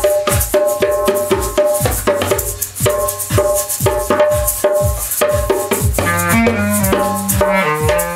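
Live jam: a repeating drum beat of low kicks and wood-block-like pitched clicks, with hand drumming on a djembe. From about six seconds in a clarinet plays a stepping melody over it.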